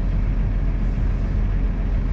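Case Puma 155 tractor's six-cylinder diesel engine running with a steady low drone, heard inside the closed cab.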